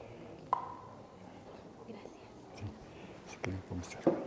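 Low, murmured voices and whispering, with a single sharp knock that rings briefly about half a second in.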